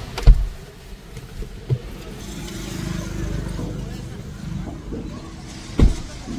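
Low rumble of a car's cabin, broken by a loud thump just after the start, a small knock a little later, and another loud thump near the end.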